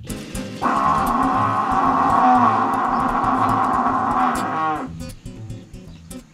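A zebu mooing once: one long call of about four seconds that tails off at the end, over light guitar background music.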